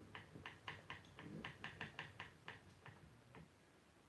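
Faint, quick, slightly irregular clicking, about four to five ticks a second, from flax being spun on a spinning wheel; the ticks stop shortly before the end.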